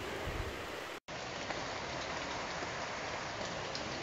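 Steady rush of fast-flowing creek water, with a brief dropout about a second in where the recording cuts.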